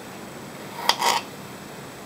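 A small piece of fresh turmeric root being set into a glass canning jar: a sharp tap on the glass about a second in, then a brief rustle.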